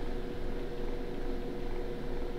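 Steady room tone: a low hum with a faint steady tone and light hiss, with no sudden sounds.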